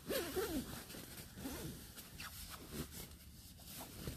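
Sleeping-bag zipper being pulled in several short, uneven strokes, with the slick nylon of the bag rustling as it is drawn up over the head.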